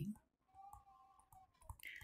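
Near silence with a few faint clicks, typical of a stylus tapping a writing tablet as an equation is handwritten, over a faint steady hum.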